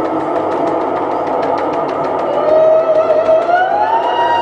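A sustained drone of many held tones from a live experimental music performance, with a fast run of ticks through the first half and one tone sliding steadily upward near the end.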